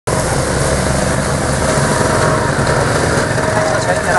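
Small motorcycle engines running steadily as motorcycles ride along a waterlogged road.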